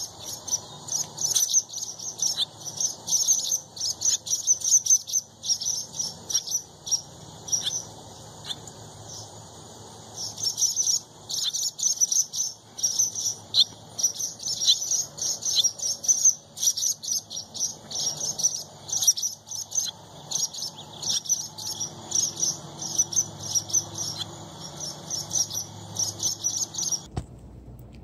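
Small birds chirping continuously, a dense run of short, high, irregular chirps.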